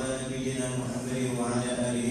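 A man chanting into a microphone in long, drawn-out notes that slide from one pitch to the next.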